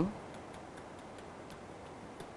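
Faint, irregular light ticks of a stylus tapping and dragging on a pen tablet as an equation is handwritten, over a steady low hiss.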